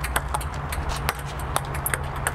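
A table tennis rally: the ping-pong ball clicks back and forth off the rubber paddles and a Butterfly table, several quick taps a second, over a steady low hum.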